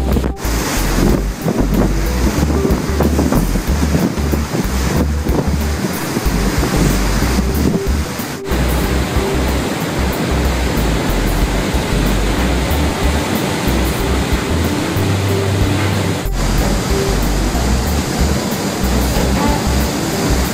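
Wind buffeting the microphone and sea water rushing past a moving boat, a steady loud noise with gusty low rumbles.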